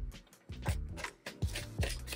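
Tarot cards being handled as they are pulled from the deck: a series of about six short clicks and taps, over soft background music.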